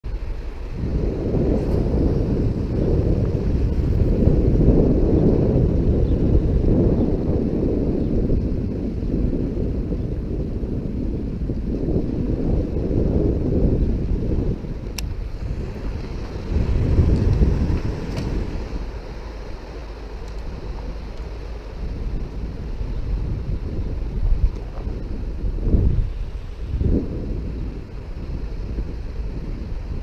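Wind buffeting the microphone in uneven gusts, strongest over the first several seconds and easing later. A couple of brief clicks are heard midway.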